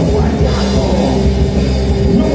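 Live rock band playing loud: electric guitars and bass guitar over a drum kit.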